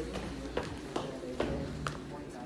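Footsteps of sneakers walking at a steady pace, about two steps a second.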